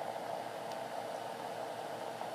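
Steady background hiss of room noise, even throughout, with no distinct sounds in it.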